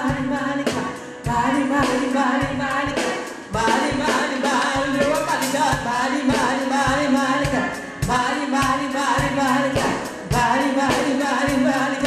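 Gospel praise-and-worship singing led by a woman's voice into a microphone, over a steady percussive beat.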